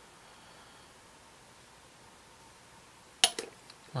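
Quiet room tone, then a sharp click about three seconds in and a few fainter clicks, from plastic model-kit parts being handled at the workbench.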